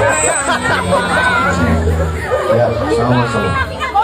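Several voices chattering and talking over one another, with background music playing underneath.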